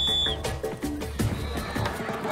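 One short blast on a plastic coach's whistle, a steady high tone of about a third of a second, over trailer music with a steady percussive beat.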